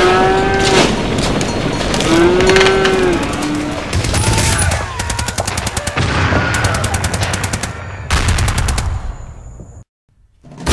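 Battle sound effects: two long, low animal bellows, then several bursts of rapid machine-gun fire that cut off shortly before the end.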